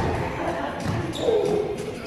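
Basketball bouncing on a sports-hall floor during play, with players' voices in the background of the large hall.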